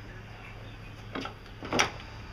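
Two short metal clunks, the second louder, as the power steering pump bracket is worked loose by hand and its stuck bolt comes free.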